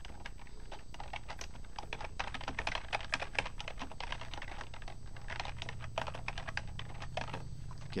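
Typing on a computer keyboard: irregular runs of quick keystroke clicks, over a steady low hum.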